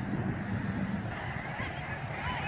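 Faint honking calls from a flock of birds: many short overlapping rising-and-falling calls that begin about a second and a half in, over a steady low rumble.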